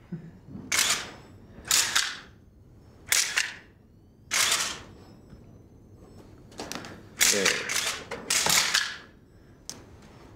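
Press photographers' still-camera shutters clicking in about six short, rapid bursts, separated by quieter gaps, with the longest and loudest bursts late on.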